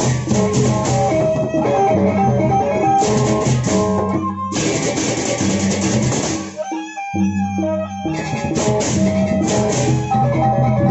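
Lombok gendang beleq ensemble playing: large double-headed barrel drums and many clashing hand cymbals over a repeating melody of pitched notes. The cymbals drop out briefly about two-thirds through, leaving a few held low notes, then the full ensemble comes back in.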